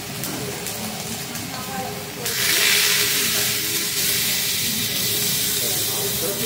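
Food sizzling on a hot hibachi (teppanyaki) griddle, then about two seconds in a sudden, much louder hiss of steam and sizzling that carries on steadily.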